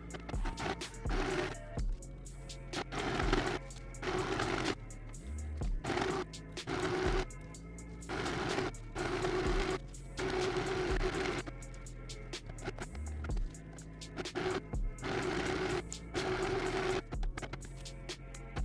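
Portable mini sewing machine stitching a seam in short, irregular bursts of a second or less, starting and stopping a dozen or so times, over background music.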